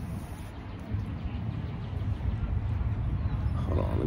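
Low, uneven outdoor rumble that grows louder about a second in, with a brief voice just before the end.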